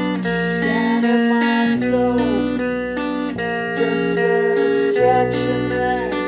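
Live rock band playing: electric guitars ringing out chords that change about every second, some notes bending in pitch, over drums, with a short sung "yeah" near the end.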